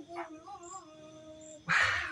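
A faint, wavering animal whimper, then a short breathy exclamation near the end.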